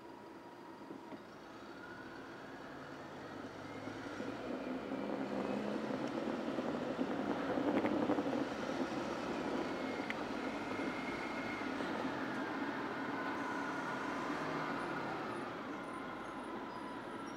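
A car moving off from a stop and picking up speed in city traffic. The engine and road noise rise over the first several seconds and are loudest about halfway, with a city bus running close alongside.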